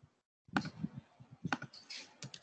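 Irregular clicking of typing on a computer keyboard, heard over video-call audio that cuts to dead silence between bursts.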